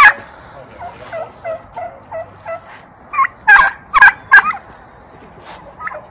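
Domestic turkeys calling: a run of short, softer calls, then a tom gobbling loudly in several quick bursts about three and a half seconds in.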